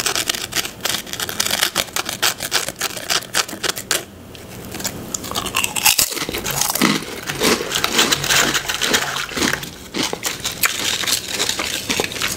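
Close-miked crunching of ridged potato chips: dense crisp crackling for the first few seconds, a quieter moment, a sharp bite about six seconds in, then irregular crunchy chewing.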